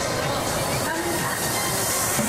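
Stadium crowd noise with a reverberant public-address voice over it, during the starting-lineup introductions.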